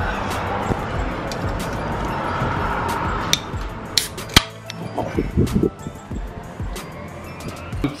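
Rushing wind noise for the first few seconds, then sharp clicks and a clink from an aluminium drink can being handled, the loudest click about halfway through, followed by a few soft knocks and rustles.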